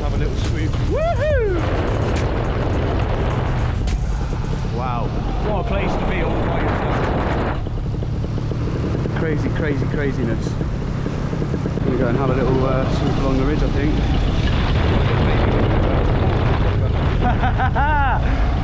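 Paramotor engine and propeller running steadily in flight, heard with wind rushing over the mic. Several brief sweeping sounds rise and fall in pitch over it.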